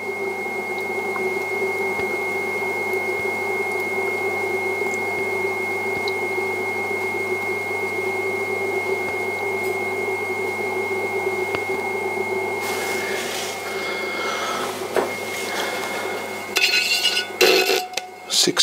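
Electric potter's wheel running steadily, its motor giving a high whine over a low hum while wet clay is thrown. The whine drops out about fifteen seconds in, followed by irregular clatter and handling noise as a ruler is brought to the pot.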